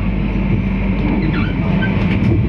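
Steady low rumble of a passenger train rolling slowly along a station platform, heard from inside the coach, with faint distant voices from the platform.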